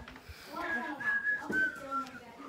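A person whistling a few short notes at a steady high pitch, with a single knock about one and a half seconds in.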